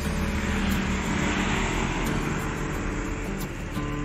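A Mercedes-Benz 1626 coach's engine and road noise as it moves off, swelling about a second and a half in, under background guitar music.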